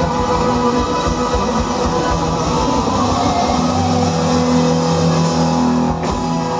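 Live blues-rock band, electric guitar, bass guitar and drums, playing loudly. The steady drumming stops a little past halfway and the band holds one long chord as the song ends.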